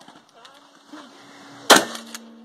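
A single shotgun shot about 1.7 s in, sharp and loud with a short ringing tail. Before it there are only faint low sounds.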